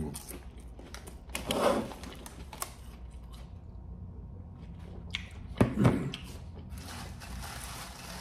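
A person chewing and eating potato chips, with wet mouth sounds and a few sharp clicks. There is a louder thud about five and a half seconds in, and chips rustle in a bowl near the end.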